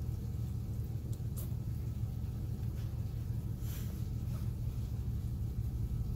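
A steady low rumble throughout, with a few faint clicks and rustles from someone eating salad with a plastic fork from a paper bowl.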